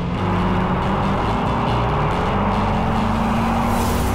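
Chevrolet Corvette C8's V8 engine running with a steady drone, its pitch creeping slowly upward as the car pulls along.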